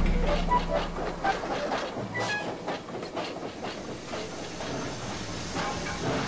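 A soundtrack of noisy sound design: a steady hiss thick with scattered clicks and a few brief short tones, easing down in level over the first few seconds.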